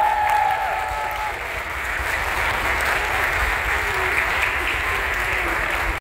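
Audience applauding at the end of a children's dance performance, a steady even clapping that takes over as a held tone dies away about a second in.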